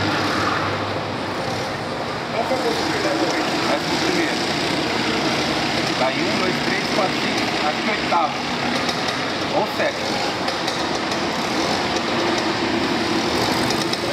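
Engines of a pack of racing karts running together through a corner, a dense steady buzz with single engines rising and falling in pitch as drivers lift and accelerate.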